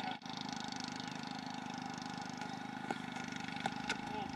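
Steady low background hum with several constant tones, broken only by a few faint clicks near the end.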